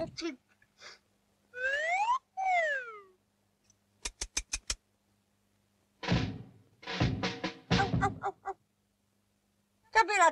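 Cartoon sound effects: a squeal gliding up and then one gliding down, then a quick run of five clicks a little after four seconds in, and from about six seconds a few rough, noisy bursts.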